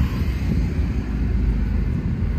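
Steady low rumble of outdoor background noise, with no distinct engine note.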